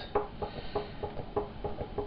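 A run of soft, irregular taps and clicks, about four or five a second, over a faint low rumble.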